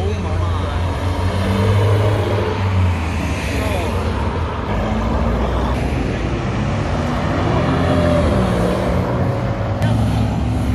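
Several cars driving slowly past in a procession, their engines running steadily at low revs, with indistinct voices of onlookers.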